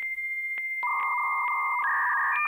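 Dial-up modem connection handshake starting: a steady high answer tone broken by regular clicks, joined about a second in by a lower buzzy tone, with the pitch stepping up near the end.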